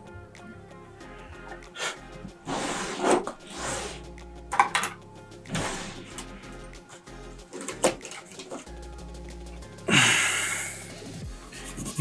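Background music, with short bursts of scrubbing as a cotton swab wipes flux and isopropyl alcohol off the soldered pads of a charging-port flex cable on a circuit board. A longer, harsher scrub comes near the end.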